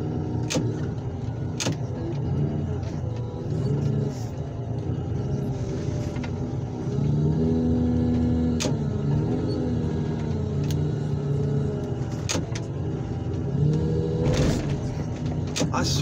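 Heavy equipment's engine running under hydraulic load as the boom and attachment are swung and lowered over a scrap car. Its pitch rises and falls with the work, and there are a few sharp metal knocks.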